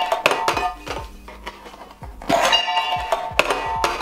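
Metal gift tin clinking and knocking as it is handled, several knocks with the loudest in the second half; music plays underneath.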